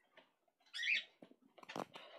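A small pet gives a short, high-pitched squeaky call about a second in, then a brief buzzy sound near the end.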